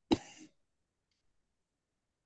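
A person clearing their throat once, briefly, just after the start.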